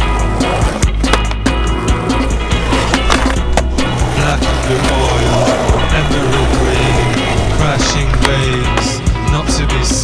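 Skateboard wheels rolling on concrete with sharp clacks and knocks of the board, mixed with a rock instrumental with a steady beat.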